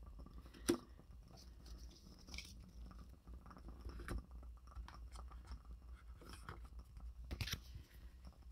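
Faint, soft rustles and light taps of tarot cards being drawn from a deck and handled over a cloth-covered table, with a sharper tap just under a second in and a few more near the end.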